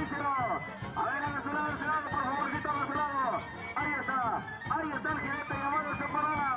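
Live brass band music with a steady beat, repeating a short phrase about once a second.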